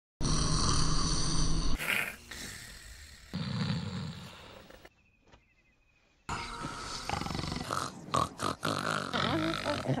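Snoring and sleepy grunting from animated characters, in several short clips cut together. There is a near-silent break of about a second and a half in the middle.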